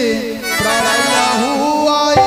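Harmonium accompaniment of traditional Odia theatre: steady held reed chords, with a melody line over them that glides and wavers in pitch.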